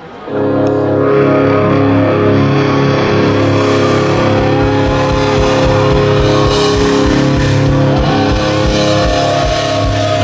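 Rock band playing live on a festival stage: loud distorted electric guitars and bass holding chords over drums. The band comes in sharply just after the start, and fast, steady kick-drum beats join about three and a half seconds in.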